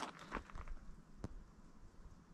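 A few faint footsteps crunching on a gravel trail, dying away after a little over a second.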